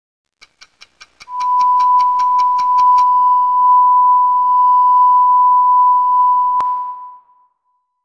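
A quick run of evenly spaced ticks, about six a second, under a loud, steady, high electronic beep tone that starts about a second in and is held for nearly six seconds before fading away. A single sharp click comes just before the tone fades.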